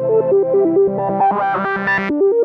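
Electronic techno music: a synthesizer plays a fast arpeggio of short stepping notes. A brighter, distorted layer swells over it in the second half and cuts off suddenly at the end.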